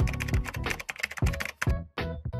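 Quick computer keyboard typing, a run of fast key clicks, over background music with a steady bass beat.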